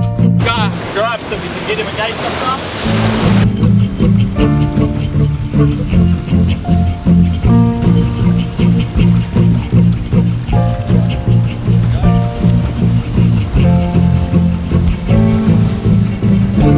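Surf breaking and washing over rocks, with a brief wavering call heard over it, for the first three seconds or so. Then background music with a bass line and a steady beat takes over for the rest.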